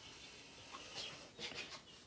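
Black felt-tip marker drawing lines on paper: a few faint strokes in the second half.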